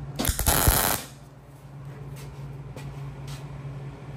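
MIG welder striking an arc for a single tack weld on a steel bending-dog fixture: a short burst of under a second, about a quarter second in. A low steady hum runs underneath.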